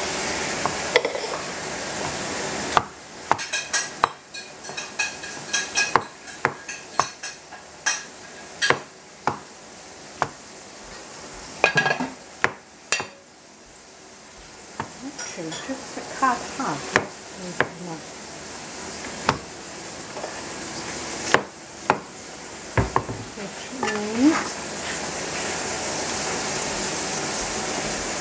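A steel cleaver slicing mushrooms on a plastic cutting board: irregular sharp knocks of the blade on the board through the middle of the stretch, over a steady background hiss.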